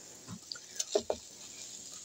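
A few faint, soft scrapes and taps of a silicone spatula stirring rice and diced vegetables in a frying pan, mostly in the first half.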